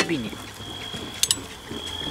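Faint voices in the background during a lull in the talk, with a thin steady high-pitched tone running underneath. Two quick clicks come about a second in.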